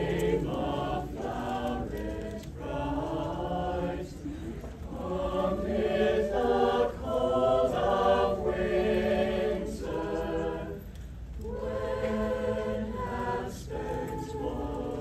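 Mixed high-school choir singing a carol in sustained phrases, with short breaks for breath between lines.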